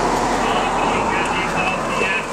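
A group of walkers singing a Norwegian hymn together, the many voices blurred into one continuous sound with held notes.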